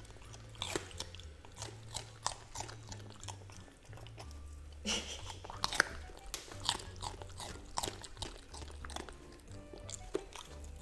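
Golden retriever puppy chewing raw bell pepper, with irregular crunches and crisp clicks of its teeth all through.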